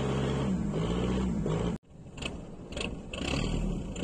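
Boat engine running with a steady low hum that cuts off abruptly a little under two seconds in. A quieter hiss with a few short knocks follows.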